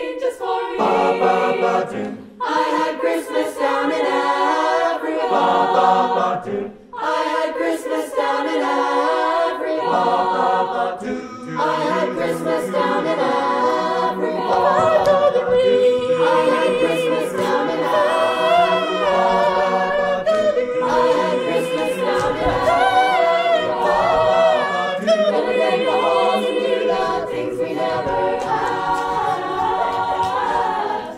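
Mixed-voice high-school choir singing a cappella in close harmony, with two brief breaks in the first seven seconds.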